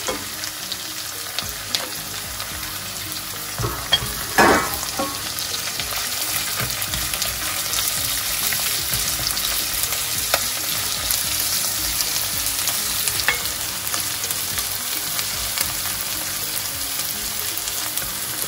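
Chopped onions, green chillies and garlic sizzling in hot oil in a pot while being stirred with a plastic spatula, with light scrapes and clicks of the spatula. There is a louder scrape about four seconds in, and the frying hiss grows a little louder after about six seconds.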